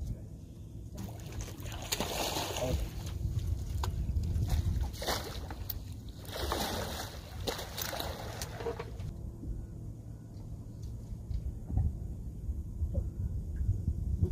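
Water splashing and sloshing in several bursts as a hooked fish thrashes at the surface and is scooped into a landing net beside the boat, from about a second in until about nine seconds in, over a steady low rumble.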